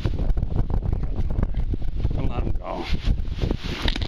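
Wind buffeting the microphone, a steady low rumble, with short knocks from the camera being handled and a few indistinct mumbled words about two and a half seconds in.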